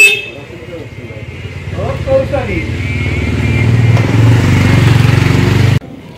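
A vehicle engine running, getting louder over the first few seconds and then holding steady, cut off suddenly near the end.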